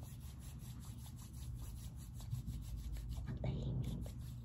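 Palms rubbing hand sanitizer together, a quick, steady run of soft rubbing strokes.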